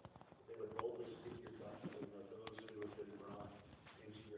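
A man's voice, faint and indistinct, leading a prayer, with a few light clicks.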